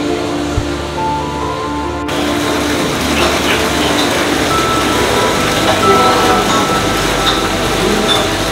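Background music with held tones. About two seconds in, a steady rush of water joins it: spring water pouring down into a brick-lined Roman drain.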